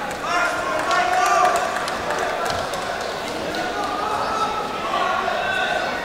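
Voices calling and talking across a large, echoing sports hall, with a few short dull thuds among them.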